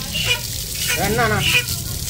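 Water gushing from a tap pipe and splashing onto a bare foot and a wet concrete floor, a steady spattering spray.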